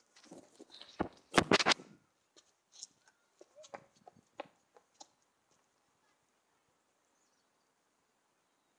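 Handheld camera being set down on tarmac: handling rubs and a few loud knocks against the ground in the first two seconds. Faint scattered footsteps on tarmac follow as someone runs away, dying out about five seconds in; then near silence.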